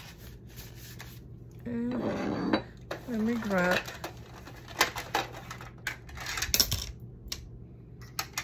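Two short wordless vocal sounds, like humming, a couple of seconds in. These are followed by a run of sharp clicks and small metallic rattles as large metal paper clips are set down and clipped onto the journal's paper pages.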